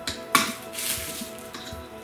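A pocket knife being handled while opening a package: a sharp click about a third of a second in, then a short scraping rustle. Background music plays steadily underneath.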